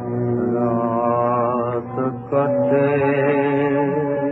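1934 Hindi film song recording: a held, slightly wavering melody line over a steady low drone, moving to a new note a little past halfway. The sound is dull and lacks treble, as an old recording does.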